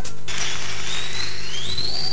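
The music cuts off just at the start, and an audience applauds with a few rising whistles, over a steady mains hum.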